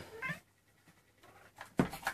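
A Maine Coon kitten gives one short mew just after the start. Near the end comes a loud, sharp thump.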